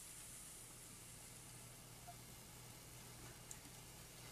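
Faint, steady sizzle of breaded cutlets frying in a nonstick pan, over a low hum.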